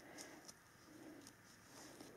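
Near silence: room tone with two faint, soft low sounds.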